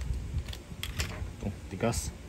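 A few light clicks and taps from handling a steel gel blaster upgrade spring and its clear plastic packaging sleeve, as the spring is pulled out and squeezed in the fingers.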